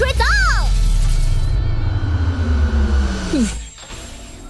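Cartoon sound effects for an electric energy dash: a loud, deep rumble with a hiss and a long falling tone, over background music. The rumble cuts off about three and a half seconds in.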